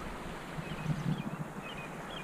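Outdoor ambience: steady wind noise on the microphone, with a few faint high chirps.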